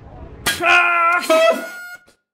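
A sudden loud, reedy wind-instrument tone held on one pitch, then a second held note about an octave higher, cut off abruptly into dead silence.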